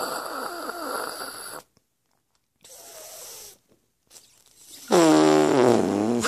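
A person making odd, wordless vocal noises: a wavering squeaky sound in the first second and a half, a faint one around three seconds, and a louder, longer pitched noise in the last second.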